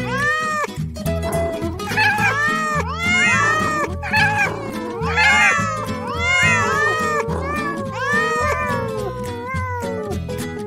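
Many cats meowing over one another, a crowd of overlapping meows that rise and fall in pitch, thinning out near the end, over background music with a steady beat.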